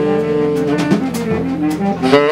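Live free jazz: a saxophone holding and bending notes over double bass, with several drum and cymbal strikes in the second half.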